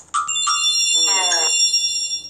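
Sparkling chime sound effect from a children's Bible story app: several high, steady bell-like tones sound together and ring for about two seconds, signalling that a hidden Bible gem has been found. A brief voice sounds about a second in.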